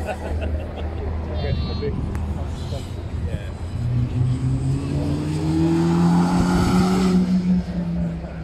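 Sports car engine accelerating past on a hillclimb course, its note rising in pitch and growing louder through the second half, then dropping away suddenly near the end. Crowd chatter runs underneath.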